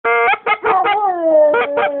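A yellow Labrador retriever howling, one long call sliding slowly down in pitch, while a goose call is blown in quick short honks, several a second.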